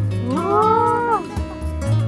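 A person's drawn-out exclamation of surprise, 'uwaa', in a high voice that rises, holds and falls away within about a second, over background acoustic guitar music.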